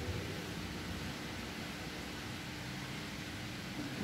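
Steady background hiss of room noise with a faint, even hum and no distinct sound events.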